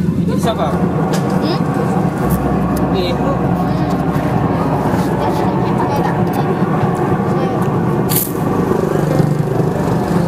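An engine running steadily, with voices in the background.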